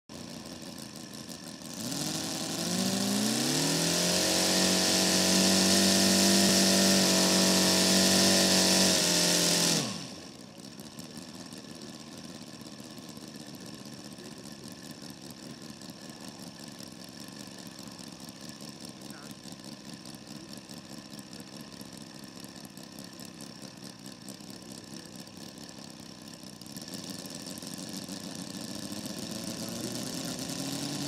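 Large-scale RC model biplane's engine run up about two seconds in, its pitch climbing and then holding steady for about eight seconds before cutting off suddenly. A quieter steady hum follows, and near the end the engine is running again, its pitch rising as the propeller spins up.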